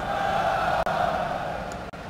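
Background noise of a large event hall between a presenter's sentences: a hum that is strongest for about the first second and a half, then fades to a lower steady noise.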